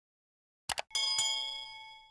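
Subscribe-reminder sound effect: two quick mouse clicks, then a bright notification-bell ding struck twice in quick succession, ringing out and fading over about a second.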